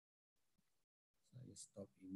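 Near silence on a video-call line, with a brief faint murmur of a man's voice in the second half.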